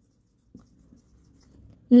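Felt-tip dry-erase marker writing on a whiteboard: a faint tick and then soft, faint scratching strokes as a word is written. A woman's voice starts near the end.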